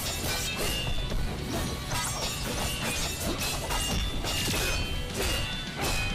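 Sword-fight sound effects from an animated fight: a string of blade clashes and hits, several a second, over a background song.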